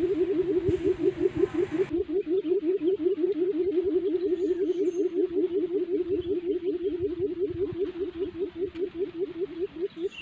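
A decoy quail calling to lure wild quail to a snare: a fast, steady run of short, low notes, each rising in pitch, about seven a second, easing off slightly near the end.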